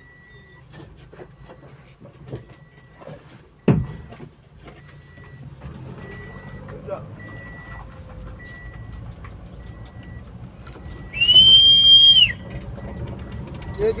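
Vehicle driving, heard from inside the cab: a steady low rumble of engine and tyres, with a sharp thump about four seconds in. Near the end, a loud, steady, high whistle-like tone lasts about a second.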